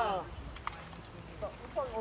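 Voices talking, trailing off and then resuming, with one sharp knock about two-thirds of a second in, the crack of a sparring weapon landing in armoured combat.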